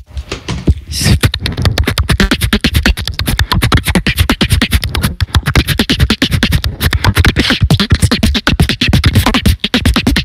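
Solo beatboxing into a handheld microphone: after a brief silence at the very start, a fast, dense stream of percussive mouth sounds with heavy bass runs without a break.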